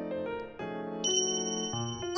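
Background music with a bright bell-like chime sound effect that rings out about a second in and sustains briefly.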